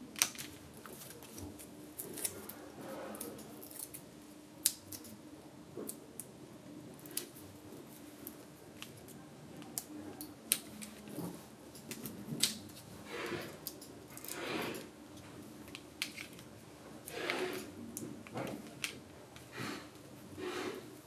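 Paper-craft handling sounds: scattered sharp clicks and soft rustles of card and paper as backing is peeled from sticky foam pads and die-cut layers are pressed into place, over a faint steady hum.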